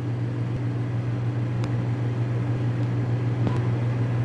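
Steady low electrical hum under an even hiss, with a couple of faint ticks.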